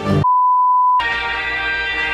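Edited-in background music breaks off for a single steady high beep of under a second, then different music with a steady beat starts.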